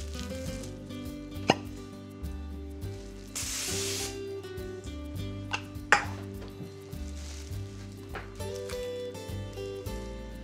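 Background music, with a short hiss of aerosol cooking spray lasting under a second about three and a half seconds in. A few sharp clicks come from handling plastic wrap and the spray can.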